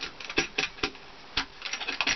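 A handful of light, irregular clicks and taps as a battery cutoff switch is handled and pushed into a drilled hole in a plywood mounting plate.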